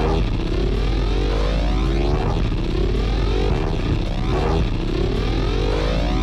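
Loud DJ mix of electronic music with a deep, steady bass and a rising sweep that repeats about once a second.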